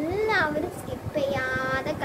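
A young girl's voice singing a short phrase, holding one steady note near the end.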